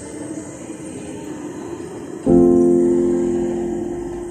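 Piano music: a quiet stretch, then a loud chord struck a little over two seconds in that rings on and slowly fades.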